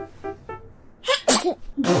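A woman's held-in laughter breaking out: two short puffs of breath about a second in, then a louder burst near the end, over light background music.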